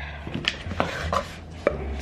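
A glass rum bottle being handled while she tries to open it: a few light knocks and clicks over a low rumble of handling.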